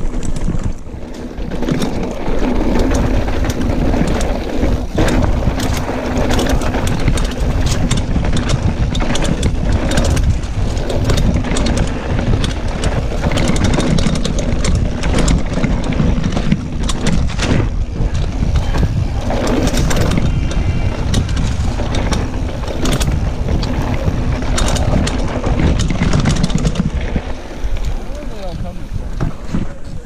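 Mountain bike ridden over rough dirt singletrack: steady wind noise on the microphone and tyre rumble, with frequent rattling knocks from the bike jolting over bumps.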